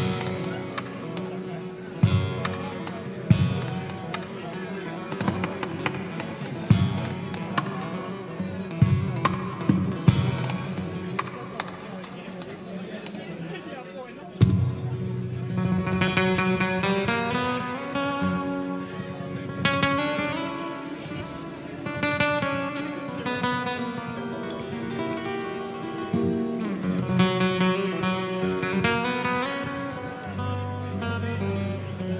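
Solo acoustic guitar played fingerstyle in a Spanish, flamenco-like style. The first half is full of sharp percussive strikes and strums. From about halfway through it moves into a flowing run of ringing melodic notes.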